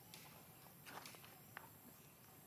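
Near silence: faint outdoor background with a few soft clicks or rustles about a second in and once more a little later.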